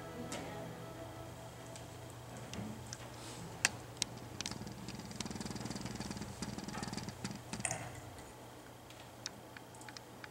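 The last held notes of a hymn fade out, leaving a low steady hum that stops about eight seconds in, with scattered clicks and taps, the sharpest about three and a half and four seconds in.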